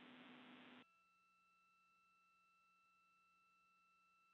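Near silence: the faint hiss of the space-to-ground radio loop cuts off suddenly under a second in, leaving only very faint steady electronic tones.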